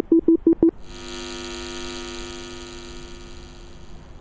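Electronic device sound effect: a few quick beeps on one pitch, about six a second, stop under a second in and give way to a long, steady electronic tone rich in overtones that slowly fades out. It stands for the hacked smart bench being reprogrammed.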